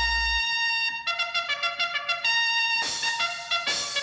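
Brass-led closing theme music: a trumpet holds a note for about a second, then plays a run of short, quick notes and finishes on longer brass chords.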